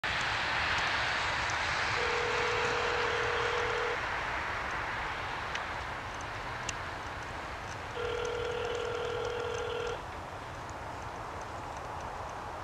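Telephone ringback tone of an outgoing call, heard twice, each ring about two seconds long and four seconds apart, which means the called phone is ringing. A steady hiss runs underneath.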